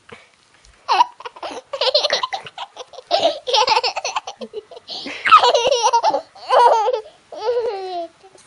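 A two-year-old girl laughing hard while being tickled, in repeated bursts starting about a second in, with short breaks between them.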